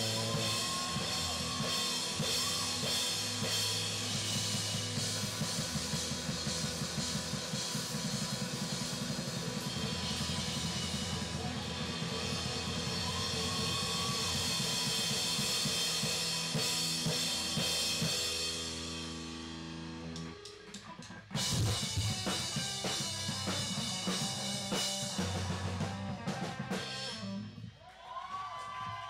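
Live rock band playing an instrumental passage on drum kit, electric guitars and bass, with kick drum, snare and cymbals prominent. About twenty seconds in the sound thins out, then the full band comes back in hard with a sudden loud hit and keeps playing until just before the end.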